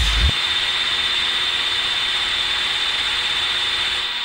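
A last kick drum of a techno title theme, then a steady hissing synth white-noise wash with a high steady tone held over it.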